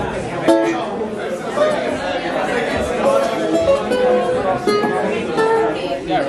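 Nylon-string acoustic guitar being plucked, loose single notes and short phrases rather than a song, over people talking in the room.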